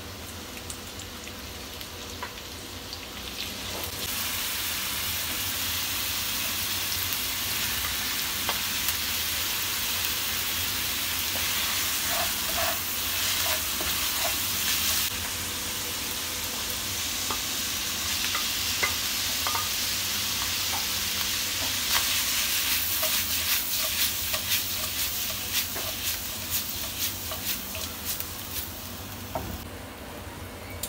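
Food sizzling in hot oil in a nonstick pan. The sizzle jumps louder about four seconds in as sliced mushrooms go into the pan, and again about 22 seconds in as bacon and ham are added, with short clicks from a spatula stirring.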